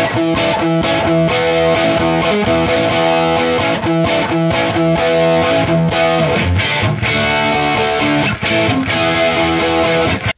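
Overdriven electric guitar (a Gibson Les Paul) playing chords and riffs through a tall Marshall 1960B 4x12 cabinet loaded with Celestion G12M greenback speakers. To the player it sounds no bigger than a standard 4x12, just boxier, though he allows that he may not have miked the tall cab properly.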